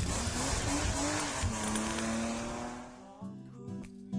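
Car sound effect of tyre squeal and engine noise in a show intro, fading out over about three seconds. Music with plucked guitar notes comes in near the end.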